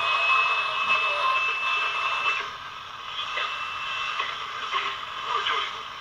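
Six-transistor pocket AM radio's small speaker playing hissy reception, with a thin steady whistle tone through the first half. The signal reaches the radio only by coupling from the antenna's pick-up coil, even with its leads shorted.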